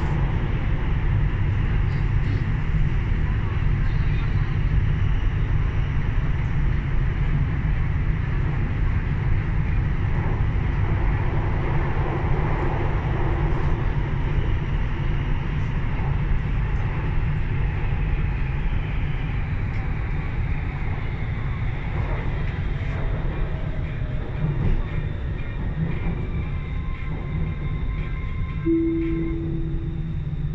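Cabin noise inside a Siemens Modular Metro train running through a tunnel: a loud, steady rumble of wheels and running gear. In the second half it eases a little and a faint whine falls in pitch as the train slows for the next station, with a short steady tone just before the end.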